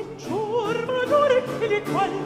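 Baroque opera singing: a solo voice with strong vibrato, its line gliding up early on and climbing by steps around the middle, over instrumental accompaniment.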